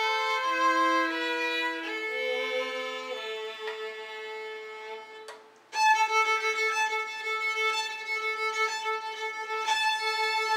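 Two violins playing a slow duet of long held, bowed notes, two lines sounding together. About halfway the playing fades away to a brief near-silent gap, then comes back in suddenly with sustained notes.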